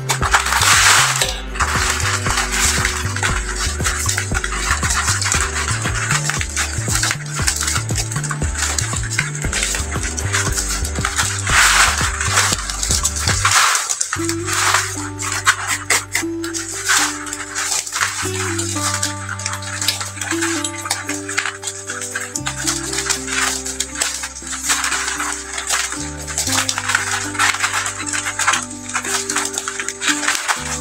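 Background music: a stepping bass line that changes to longer held notes about 14 seconds in. Under it run a steady crackle and clicking of stiff plastic strapping bands being handled and woven.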